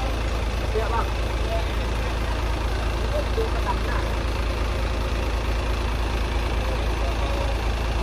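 Diesel engine of a heavy trailer truck idling steadily, a constant low rumble, with faint voices in the background.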